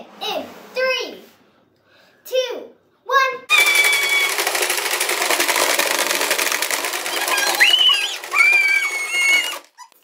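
Hungry Dino marble game played flat out: plastic dinosaur levers hammered and heads snapping, marbles rattling around the plastic board in a loud, dense clatter of rapid clicks. It starts about three and a half seconds in, high-pitched squeals ring over it, and it stops abruptly near the end.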